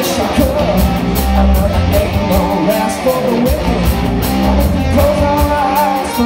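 Live rock band playing: electric guitar, bass guitar and drum kit with a steady cymbal beat, with a lead vocalist singing over them.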